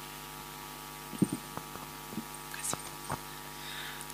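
Steady electrical mains hum, with a few faint scattered clicks and knocks, the loudest just over a second in.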